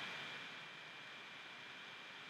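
Faint steady hiss of recording background noise with a thin, steady high-pitched whine, in a pause with no speech.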